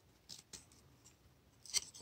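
Baseball trading cards being handled: faint scrapes and flicks of card stock as cards are slid across the stack, with a couple of soft ticks early on and a sharper flick near the end.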